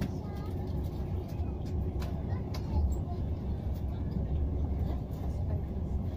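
Steady low rumble of a passenger train running, heard from inside the carriage, with scattered light clicks.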